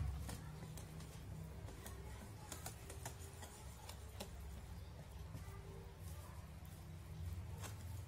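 Wire whisk stirring thick flour batter in a glass bowl, its tines clicking irregularly against the glass, over a low steady hum.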